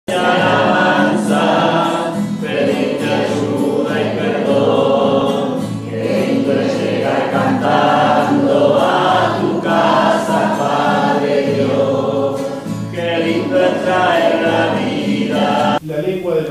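A group of voices singing a church hymn together, with long held notes; the singing cuts off abruptly just before the end.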